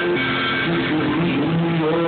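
Live blues-rock band playing, with electric guitars holding sustained, changing notes.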